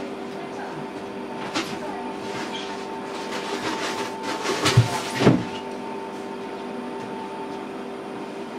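Steady background hum with a few soft clicks, and two louder knocks about five seconds in.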